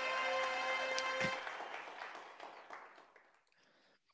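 Game-show quiz's end-of-game sound effect: a held musical chord over recorded applause. The chord cuts off about a second in and the applause fades out over the next two seconds, marking that the game is complete.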